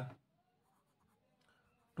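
Faint scratching of a graphite pencil on drawing paper as a short label is written by hand.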